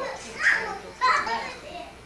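High, child-like voices in two loud bursts about half a second apart, fading toward the end.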